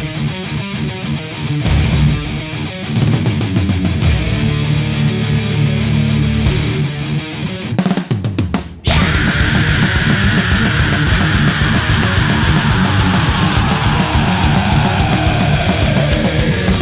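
Thrash metal song playing: distorted electric guitars over a drum kit. About eight seconds in it drops out to a few sharp hits, then comes back denser, with a long falling tone over the second half.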